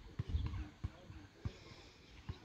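Footsteps thudding on grass, about one every two-thirds of a second, with faint voices behind.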